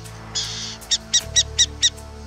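Burrowing owl calling over background music: a short hiss, then five quick chirping notes, about four a second.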